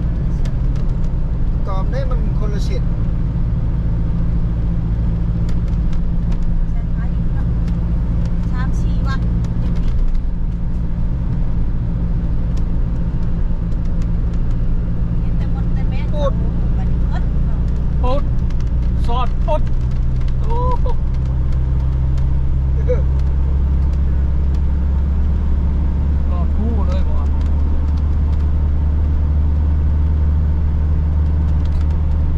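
Steady low rumble of engine and road noise heard from inside a moving car's cabin, deepening about two-thirds of the way through; faint voices come and go over it.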